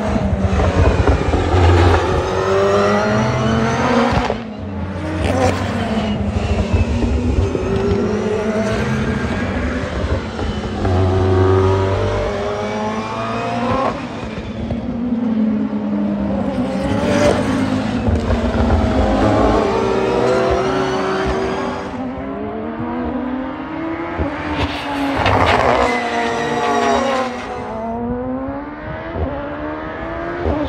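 Toyota GR Supra GT500 race cars with turbocharged 2.0-litre four-cylinder engines lapping the circuit, their revs climbing and dropping through upshifts and downshifts. Several loud passes go by, one about 17 s in and another about 25 s in.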